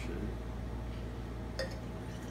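A light clink of glassware about one and a half seconds in, over a steady low hum.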